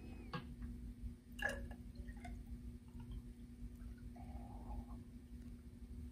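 Water poured from a clear container into a sand-tank groundwater flow model, heard faintly as a trickle with a few small drips and clicks, the loudest about one and a half seconds in.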